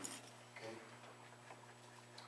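Quiet handling of a Bible as its pages are turned: a few faint ticks over a steady low electrical hum.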